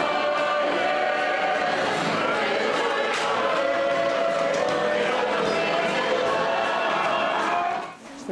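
Kapa haka group singing a Māori song together in harmony, with long held notes; the singing fades out near the end.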